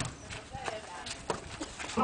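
A volleyball being hit by hand a few times, sharp slaps at irregular intervals, with faint voices of players in the background.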